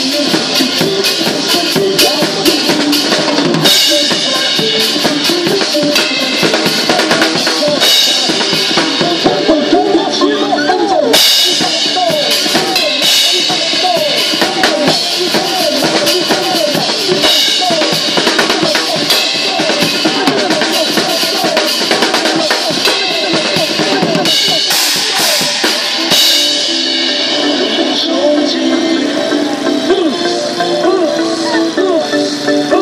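An acoustic drum kit played in a busy improvised groove over backing music: bass drum, snare and cymbals hitting densely throughout, with a melodic line in the music underneath. The cymbal wash thins out a few seconds before the end.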